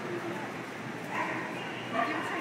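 A dog barking briefly about a second in, over the steady background of indistinct voices of a crowd in a large hall.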